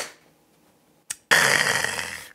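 A small glass shot glass set down on the table with a sharp clink, then, about a second and a half in, a loud breathy exhale lasting about a second, the kind of 'kya' let out after downing a shot.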